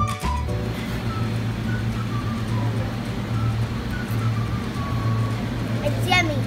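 Background music stops just after the start, leaving a steady low hum with a faint haze and a few thin, faint high notes over it.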